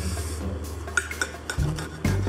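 Knife and fork working through a salmon burger on a plate, with several light clinks of cutlery against the plate in the second half. A low steady music drone runs underneath.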